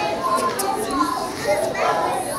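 Young children chattering, many voices at once.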